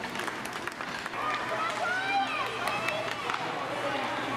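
Voices shouting and calling at an ice hockey game, with scattered sharp clicks of sticks and puck on the ice.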